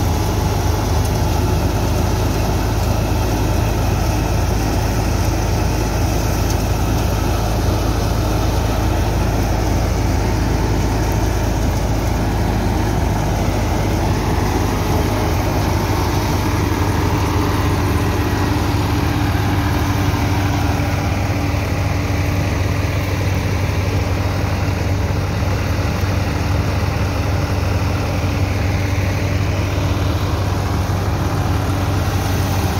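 Massey Ferguson 260 Turbo tractor's diesel engine running steadily under load, driving a large wheat thresher through its PTO shaft, the thresher drum spinning as it threshes wheat. A higher steady tone joins the deep engine hum about halfway through.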